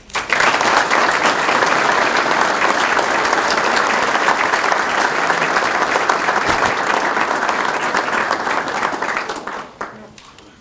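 Audience applauding, starting at once, holding steady, and dying away near the end.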